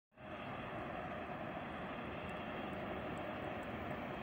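Steady distant rumble of an approaching freight train hauled by a 3ES5K "Ermak" electric locomotive, still far off down the line.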